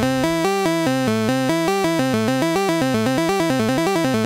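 Roland SH-101 monophonic analog synthesizer's arpeggiator running in up-and-down mode, a rapid stream of notes climbing and falling over a held chord. The notes get faster from about halfway through.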